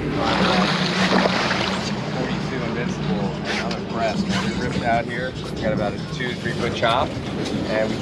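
Center console boat running at speed on quad outboard engines: a steady engine drone under the rush of wind and water. Indistinct voices come in about three seconds in.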